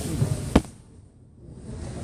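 A single sharp knock on the phone's body about half a second in, typical of a handheld phone being bumped or gripped. It is followed by a quieter, muffled stretch of room noise.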